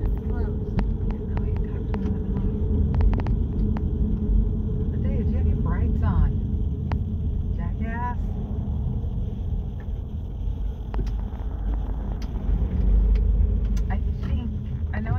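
Road and engine rumble of a moving car heard from inside the cabin: a steady low drone, with a few light clicks and brief snatches of quiet voice.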